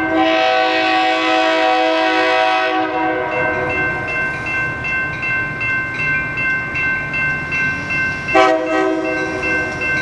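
Metra commuter train's locomotive horn blowing a long blast that ends about three seconds in, then a short blast near the end, as the train approaches a grade crossing. Under it, the crossing's warning bell dings about twice a second, and the low rumble of the approaching train grows.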